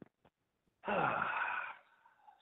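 A person's drawn-out vocal sound, like a sigh or long hum, starting about a second in and lasting about a second, its pitch falling.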